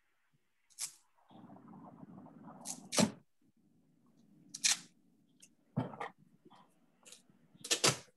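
Handling noises: a few sharp clicks and knocks, the loudest about three seconds in and just before the end, with stretches of faint rustling between them.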